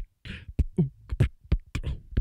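Vocal beatboxing close-miked on a handheld microphone: a quick rhythm of low kick-drum thumps, with a hissing snare sound twice.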